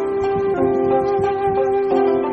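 Background music: a melody of long held notes.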